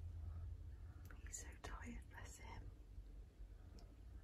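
A person whispering softly for a second or two, over a low steady hum.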